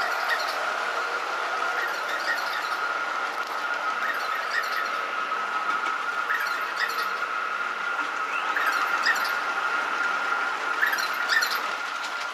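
Long subway-station escalator running: a steady high-pitched whine over a hiss, with short faint squeaks now and then.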